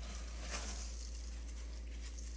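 Faint rustling and crunching of coarse kosher salt as gloved hands rub and pack it into quartered lemons in a stainless steel bowl, with a slight swell about half a second in, over a steady low hum.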